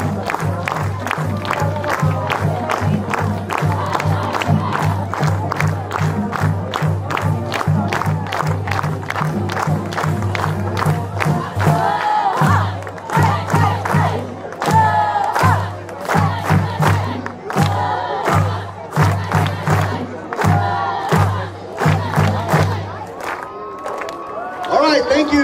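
A steady drum beat, about two hits a second with a heavy low drum, and from about halfway through a cheer squad yells a chant in short shouted phrases over the drums.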